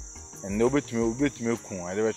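Crickets chirring in a steady, unbroken high-pitched trill, with a man's voice talking over it from about half a second in.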